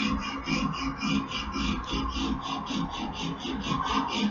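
Hand file rasping across the steel edge of a clamped axe head in a steady run of quick, even strokes, sharpening the bevel.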